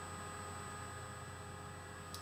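Room tone: a steady low electrical hum with faint steady high tones and hiss, and no distinct events.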